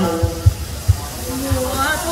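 A man's singing voice holds the word "mưa" briefly and breaks off, while acoustic guitar accompaniment plays on with a few low beats in the first second. A voice rises near the end. The singer has stumbled over the lyrics.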